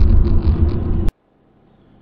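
Cabin noise of a Ford Fairmont AU at road speed on a wet road: a steady deep rumble of engine and tyres with a light hiss. It stops abruptly with a click about a second in, leaving only a faint hum.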